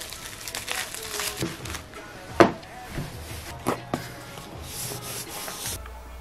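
Bubble wrap crinkling and rustling as it is wrapped around a small item by hand, with irregular sharp crackles, the loudest about two and a half seconds in.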